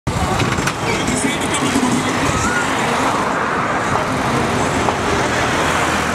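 Busy street traffic: a steady, loud wash of motorcycle and car noise, with people's voices in the background.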